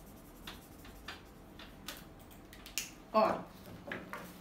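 Felt-tip pen scratching across a workbook page in a handful of short strokes while colouring in a picture.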